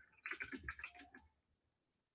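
Faint typing on a computer keyboard: a quick run of soft keystrokes in the first second or so, then quiet.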